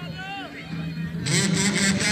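Voices calling out over a steady low hum, then a louder, harsher stretch of noise from a little past halfway.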